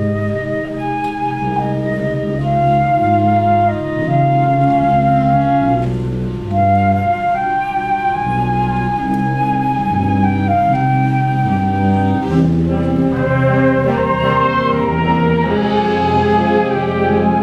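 A school wind ensemble playing a slow passage: a woodwind melody of long held notes over low sustained chords. More parts join in near the end.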